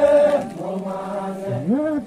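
Voices chanting a Donyi-Polo prayer in long held notes. A higher note at the start drops to a lower, quieter stretch in the middle, then rises again near the end.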